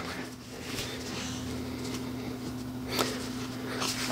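Faint handling noise of a quick-release plate being screwed tight onto a tripod fluid head, two soft clicks about a second in and at about three seconds, over a steady low hum.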